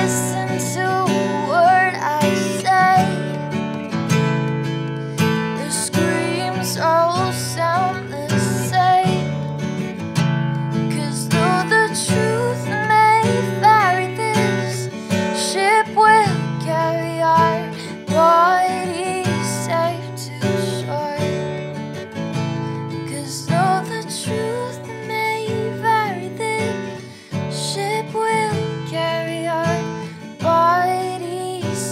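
A woman singing a melody over a strummed steel-string acoustic guitar, the voice coming in phrases over steady chords.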